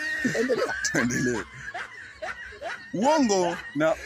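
Men laughing in short chuckles and snickers.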